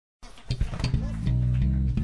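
Band music starting about a fifth of a second in: deep bass guitar notes and guitar, with sharp hits on top.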